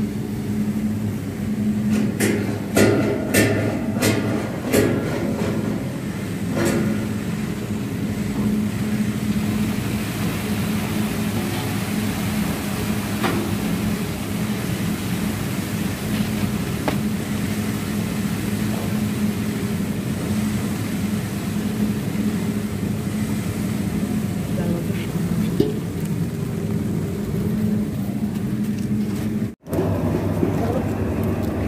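Puffed-rice (muri) roasting machine running steadily: a motor-driven rotating drum hums and puffed rice pours out over a mesh sieve. A few sharp clicks come a couple of seconds in.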